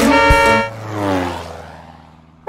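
The cartoon's music stops about half a second in, and a horn-like honk sound effect follows, its pitch sliding down as it fades, over a held low note.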